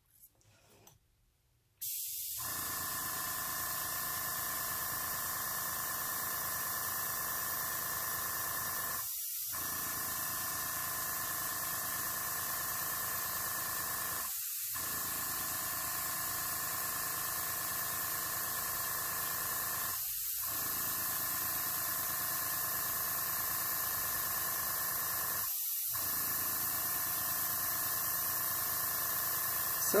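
Airbrush blowing air, fed by its small Master compressor: a steady hiss of air with the compressor's hum beneath it, starting abruptly about two seconds in and running on evenly.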